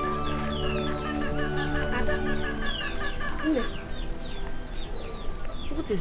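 Chickens clucking, with short chirps, over soft background music that thins out about halfway through.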